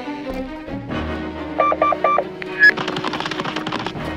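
A door intercom's electronic doorbell ringing as four short, evenly spaced beeps about a second and a half in, over background music. A brief high tone follows, then a rapid rattle of clicks for about a second near the end.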